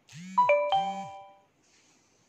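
A two-note ding-dong chime: two struck notes a little over half a second apart, each ringing on as a clear tone and dying away within about a second.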